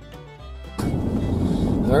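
Fiddle-led bluegrass-style music for under a second, then an abrupt cut to steady road and engine noise inside a moving vehicle's cabin, much louder.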